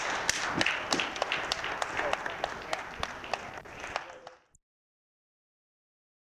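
Audience applauding. The claps thin out and fade over about four seconds, then the recording cuts off suddenly into silence.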